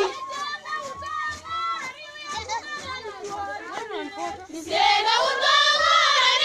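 A group of female voices singing a call-and-response song: the full chorus drops away, leaving scattered calls and chatter, then the group comes back in loudly about five seconds in. A faint steady low beat runs underneath.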